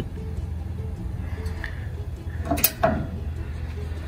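Steady low wind rumble on the microphone, with a short sharp click about two and a half seconds in.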